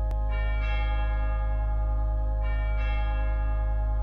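Bell tones in instrumental music, struck in pairs, two near the start and two more about halfway, each ringing on over a steady sustained drone.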